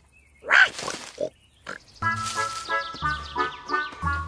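A cartoon wild boar's grunt about half a second in, followed by two shorter, quieter sounds; then a music cue with a held melody starts about two seconds in.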